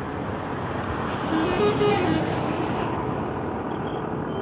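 Road traffic going by on a paved highway: cars, motorcycles and an auto-rickshaw passing, with the noise swelling a second or so in.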